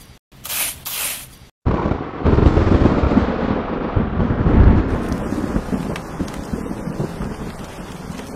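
A small trowel scraping through sand, then a sudden long rumble of thunder from about a second and a half in, strongest for a few seconds and then slowly fading.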